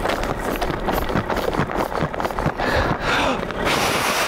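Mock CPR on an inflatable doll: rhythmic chest compressions pushing on the air-filled vinyl body, about two a second, each with a short falling sound.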